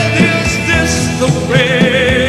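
Live rock band playing with a male lead vocal through a stage PA. About a second and a half in, a held, wavering note comes in over the band.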